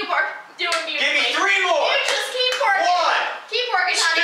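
Speech: a high-pitched young voice talking, the words not made out.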